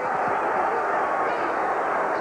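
Football stadium crowd, a steady din of many voices.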